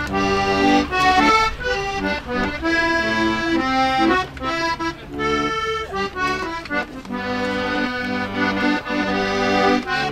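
A small wooden button accordion playing a tune: quickly changing melody notes over held chords, with brief pauses between phrases. By the player's account, it is in a tuning that does not fit with other instruments.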